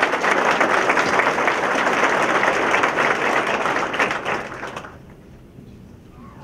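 Audience applauding: many hands clapping densely, then fading out about five seconds in.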